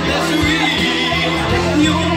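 Karaoke backing track of a pop song playing loudly over a bar PA, with a man's voice coming through the microphone over it.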